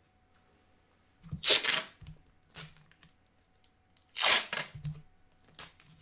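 Tape being pulled off the roll and torn into strips: two long, loud rips about two and a half seconds apart, with a few shorter crackles of tape between them.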